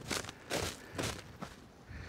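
Footsteps in snow, four steps at about two a second.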